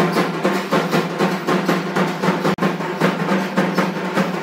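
Rapid, continuous drumming in an even rhythm over a steady low tone, breaking off for an instant about two and a half seconds in.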